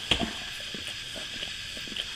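A dog licking and nosing at a newborn puppy's birth sack to break it open: a couple of sharp clicks just after the start, then scattered faint clicks over a steady hiss.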